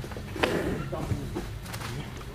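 A single thump about half a second in, over faint background voices.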